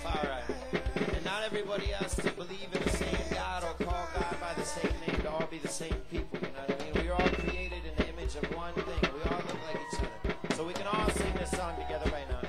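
Music with hand-drum strikes and a melody over a deep bass note that comes in for about two seconds roughly every four seconds.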